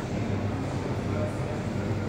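Steady low rumble of background noise with a faint murmur of distant voices.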